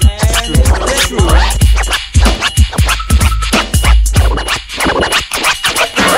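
Turntable scratching, quick back-and-forth pitch sweeps of a vinyl record, over an old-school hip-hop drum beat with a heavy kick. The scratches are thickest in the first second or so.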